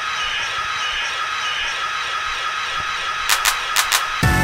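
Steady room background noise with a faint constant tone, then a few sharp clicks and knocks near the end.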